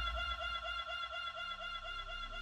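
Electro-pop song's instrumental break: a held synth chord pulsing several times a second. The heavy bass fades out at the start, leaving the chord thinner and quieter.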